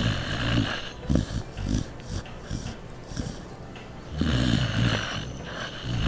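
Mixed-breed dog snoring in its sleep: a few short rough snores in the first couple of seconds, a quieter stretch, then one longer, louder snore about four seconds in.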